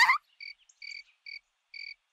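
Cricket chirping sound effect: short, evenly spaced chirps at one steady pitch, about two a second. It is the stock 'crickets' cue for a joke that has fallen flat.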